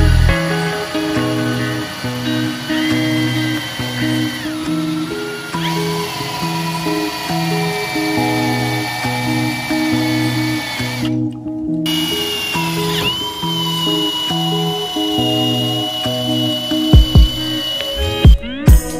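Ridgid brushless cordless drill whining as a long bit bores through an aluminum upright, the whine sagging and rising in pitch; it stops briefly about two-thirds through, then starts again and holds steady. Background music with a bass line plays throughout and is as loud as the drill.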